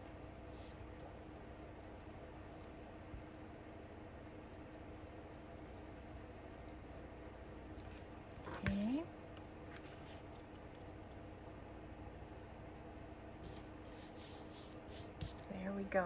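Glue stick rubbed over paper and paper pressed down by hand, faint over a steady low hum, with a short hummed note rising in pitch about nine seconds in and some soft scratchy strokes near the end.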